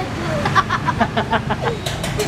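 A boy laughing in a quick run of short bursts, over a steady background of street traffic.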